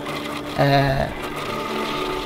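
Coffee pulping machine running steadily as water pours onto its roller and coffee cherries are fed through; a voice speaks briefly about half a second in.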